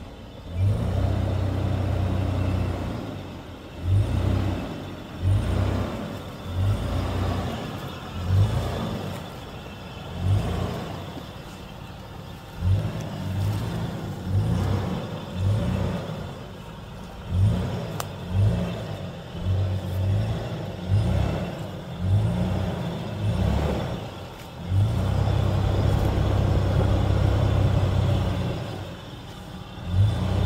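Nissan Patrol Y61's engine working under load as the SUV crawls up diagonal ruts with its rear air locker off. The revs rise in repeated short surges through the middle, with a longer steady pull near the start and another near the end.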